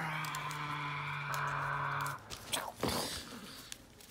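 A steady low-pitched hum-like tone holding one pitch for about two seconds and cutting off, followed a second later by a brief knock.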